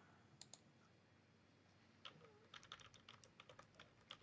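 Faint typing on a computer keyboard: a couple of clicks shortly after the start, then a quick run of keystrokes from about halfway through.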